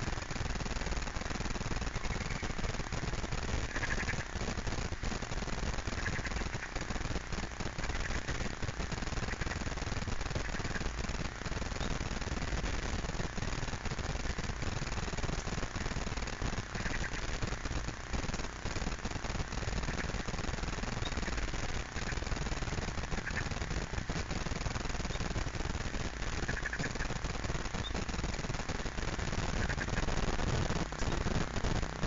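Steady rough outdoor background noise with small crackles, and short faint chirps every few seconds.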